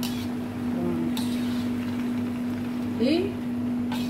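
Metal tongs tossing noodles in a wok over a gas burner, with a couple of light metallic clicks, over a steady kitchen hum.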